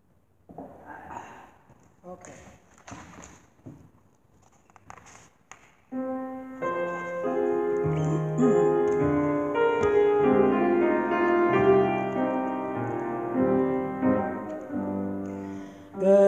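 A few seconds of scattered rustling and knocks of handling noise, then about six seconds in a piano starts playing a chordal introduction to a song, continuing steadily.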